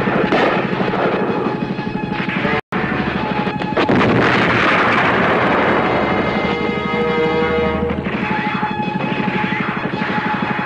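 Dramatic film score with a fast, driving drum beat and held tones, mixed with gunfire and explosions, heaviest in a loud burst about four seconds in. The whole track drops out for an instant about two and a half seconds in.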